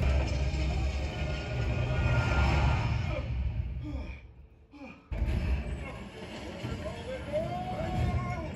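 Film soundtrack played over a cinema's sound system and heard from the seats: heavy deep bass under music and voices. It fades almost to silence for about a second around the middle, then comes back.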